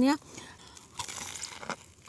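Biting into a crisp deep-fried battered stuffed tofu fritter (tahu isi): faint crunching mouth sounds with a sharper crunch about a second in.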